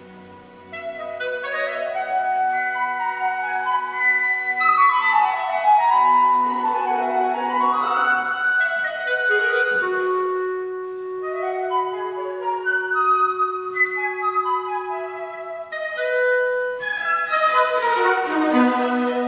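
Chamber orchestra playing a classical piece: bowed strings with a woodwind line in quick rising and falling runs, and a long held note in the middle.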